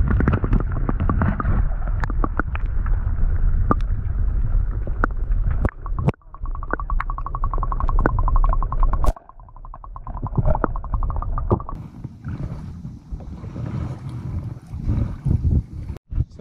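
Underwater sound picked up by a camera held below the water's surface: a low, heavy rumble of water movement with scattered sharp clicks, and a fast, even pulsing for several seconds from about six seconds in.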